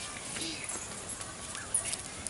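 Faint voices and scattered clicks over a steady outdoor background, with one sharp knock near the end.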